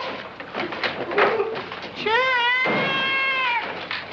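Clattering and knocking, as of wooden crates tumbling, for about two seconds. Then a man's long, high-pitched yell that wavers and then holds for about a second and a half.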